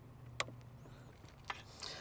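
Two faint, sharp plastic clicks about a second apart as wiring connectors are handled and pushed into the back of an aftermarket radio head unit.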